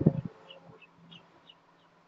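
A short low knock at the start, then a bird chirping faintly: a run of short high chirps, about four a second.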